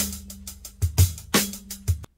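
Recorded drum-kit beat playing back from an audio file: sharp kick-drum and cymbal hits, about five in two seconds, with a short low tone ringing on after two of them.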